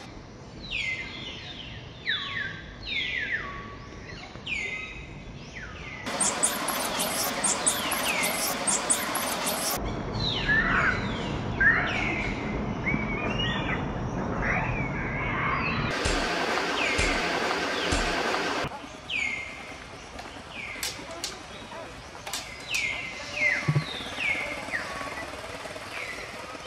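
Many short chirping calls, each sweeping quickly down in pitch, repeated every half second or so. Two stretches of loud dense hiss cut in: one about six seconds in lasting some four seconds, another about sixteen seconds in lasting nearly three.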